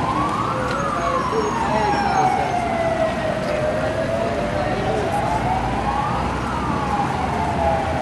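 An emergency vehicle's siren wailing slowly, its pitch rising and falling about once every six seconds.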